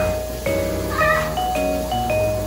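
Upbeat background music with bright mallet-percussion notes. About halfway through, a short wavering cry like a cat's meow sounds over it.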